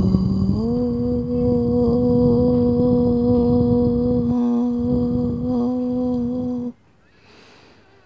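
A woman chanting a single long Om: one steady held tone that steps slightly up in pitch about half a second in, then stops abruptly near seven seconds in.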